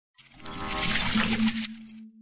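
Logo intro sound effect: a metallic rushing swell that builds over about half a second, a bright metallic clink a little past one second, then an abrupt stop leaving a single low hum that fades away.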